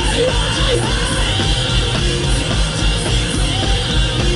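Rock band playing loudly live: driving drums, distorted guitars and bass, with the singer shouting over the band.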